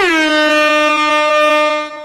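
A single long held note that dips slightly in pitch at the start, then holds steady with a bright, buzzy tone before fading away near the end.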